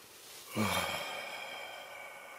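A man sighs about half a second in: a short voiced start falling in pitch, then a long breathy exhale that fades out. It is a sigh of regret at a tough decision.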